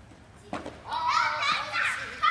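A young child calling out in a very high-pitched voice, loud and bending in pitch, from near the middle to the end. A single knock comes about half a second in, before the voice.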